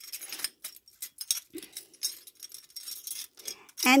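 Big charms clinking and jangling against each other inside a cloth drawstring pouch as it is squeezed and shaken by hand: an uneven run of small clicks.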